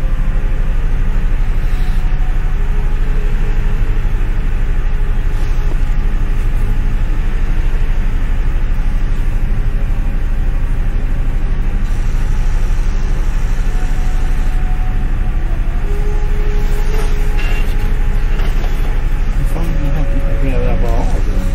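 Steady, loud, low drone of a ship's engines and machinery, heard from inside the vessel.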